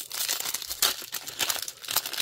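Foil wrapper of a 2024 Topps Series 1 baseball card pack crinkling in the hands as it is worked open, in quick irregular rustles.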